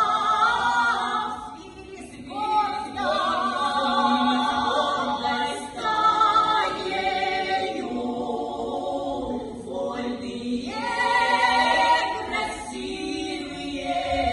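Female vocal quartet singing unaccompanied in close harmony, with vibrato on the held notes. The singing breaks briefly between phrases about two, six and ten seconds in.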